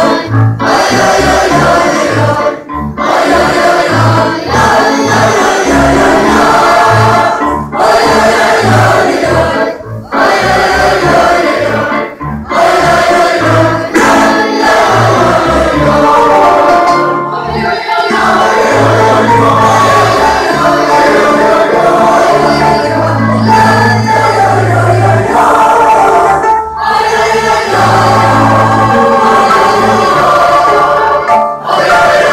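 Mixed choir of adults and children singing a folk song together, phrases broken by short breaths, with an upright bass playing low notes underneath.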